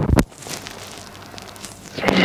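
A heavy thud of bodies landing on a gym mat as the takedown finishes, cut short about a quarter second in, followed by faint rustling and shuffling of the two grapplers on the mat.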